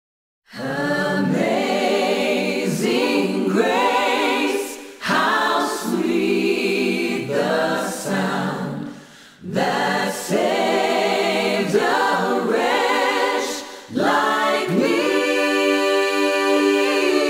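A cappella choir singing slow sustained phrases, entering about half a second in after silence, with brief pauses between phrases.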